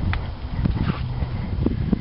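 Wind buffeting the microphone in a loud, uneven low rumble, with a few footsteps as the camera is carried along the machine.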